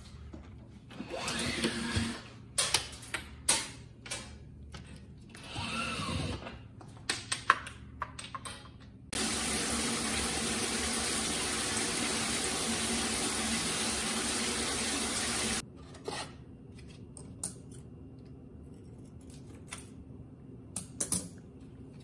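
Scattered handling clicks and rustles, then about six seconds of steady running water in a tiled bathroom, starting and stopping abruptly about nine seconds in and again near sixteen seconds, followed by a few small knocks.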